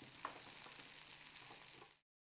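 Faint stirring of stir-fried noodles on a serving plate with a metal fork and spoon, with a light click about a quarter second in and a sharper clink near the end; the sound cuts off suddenly.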